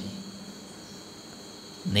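A faint, steady, high-pitched background drone fills a short pause in a man's speech. His voice comes back just before the end.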